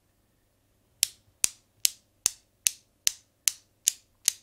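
Newton's cradle with translucent LED-lit balls, clicking as the swinging end ball strikes the row and the far ball swings out. About two and a half sharp clicks a second, beginning about a second in.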